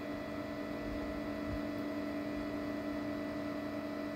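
Steady electrical hum with a few fixed tones.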